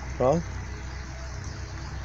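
Shallow creek water running steadily over stones, with a low steady rumble underneath.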